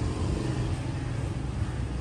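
Outdoor ambience dominated by a steady low rumble with an even hiss above it.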